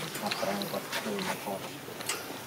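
Caged macaque monkeys making a run of short, pitch-bending calls.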